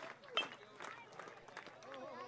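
A metal baseball bat strikes a pitched ball with a single sharp ping a little under half a second in, over scattered crowd voices.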